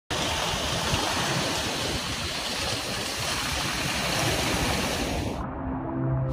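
Steady rushing ocean water noise. It turns muffled near the end as its high end drops away.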